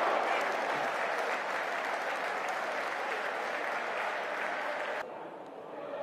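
Stadium crowd applauding a goalmouth chance. The applause is cut off sharply about five seconds in.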